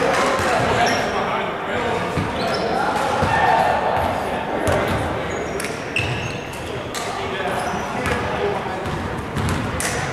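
Basketball bouncing on a hardwood gym floor, with short high squeaks and players' voices echoing in a large hall.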